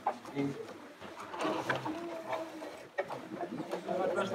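Low murmur of voices in a room full of pupils, with a few light knocks and clicks.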